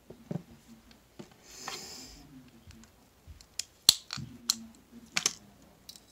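Coins and 2x2 coin holders being handled on a table: a scatter of small sharp clicks and taps, the loudest a little before the four-second mark, with a short rustle about two seconds in.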